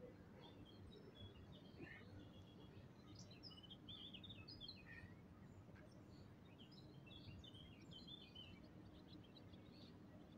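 Faint songbirds chirping in quick, short high calls, in two spells (the second starting around the middle), over low steady background noise.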